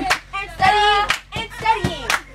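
A group of girls chanting a cheer in short drawn-out shouts, keeping time with a steady run of sharp hand claps.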